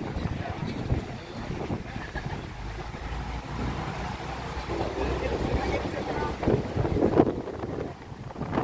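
Wind buffeting the microphone on the open top deck of a moving double-decker tour bus, over the low rumble of the bus's engine and road noise.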